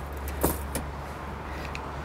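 A few light clicks and rattles from a steel tape measure being handled while measuring a mattress, over a steady low hum.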